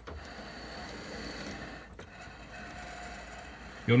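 Bachmann large-scale Jackson Sharp passenger car rolled by hand along its track, giving a steady scraping rumble with a faint thin whine and a brief tick about halfway through. The noise is quite a bit, and comes from the copper power-pickup contacts brushing against the metal wheels, which drag on them.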